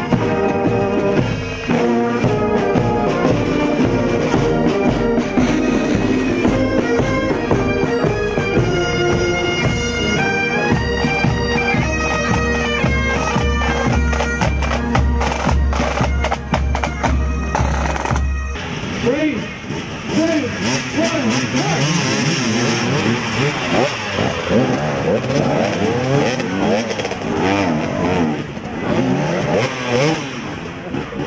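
Military brass band with corps of drums and bagpipes playing a march, with a steady bass drum beat in the final stretch before the music stops about eighteen seconds in. Then motorcycle engines revving and running.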